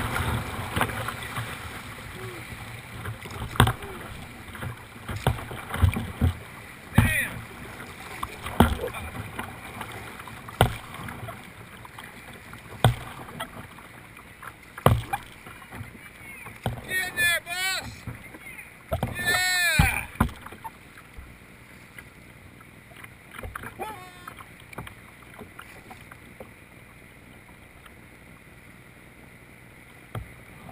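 Whitewater rushes around a plastic kayak, fading as the boat moves into calmer water. Sharp splashes and slaps of water against the hull come every second or two. Voices call out briefly around the middle.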